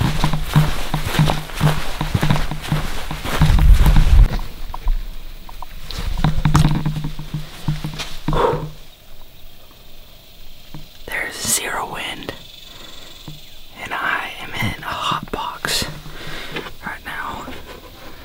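A man's footsteps over dry grass, then heavy breathing with loud, breathy exhalations, a man winded in intense heat.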